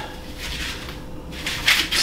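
Quiet handling of a PVC pipe frame with foam pool-noodle floats as it is turned upside down by hand: faint rubbing and light knocks over a faint steady hum, with a little more noise near the end.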